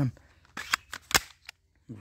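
Several sharp plastic clicks from a handheld yellow toy gun, the loudest a little past a second in.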